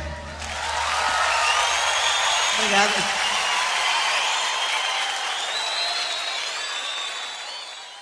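Live concert audience applauding and cheering, with scattered whistles, as a song ends; the crowd noise fades out near the end.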